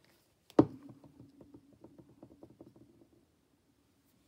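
A plastic glue bottle set down on a wooden tabletop with a single sharp knock about half a second in. It is followed by a couple of seconds of a faint steady low hum under soft, rapid little ticks.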